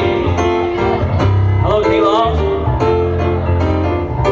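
Live acoustic guitar and grand piano playing a slow ballad together.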